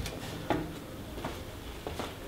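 A sharp wooden knock as the rocket launcher's wooden top and latch are handled, about half a second in. It is followed by a few lighter knocks from footsteps on the stage floor, about one every two-thirds of a second.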